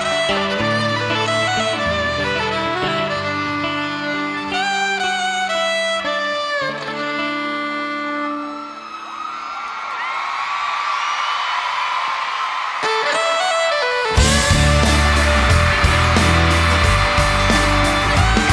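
Live country-pop band in an instrumental break: a fiddle plays the lead melody over the band. About nine seconds in the music thins out to crowd cheering and screaming, then the full band with drums comes back in loudly about fourteen seconds in.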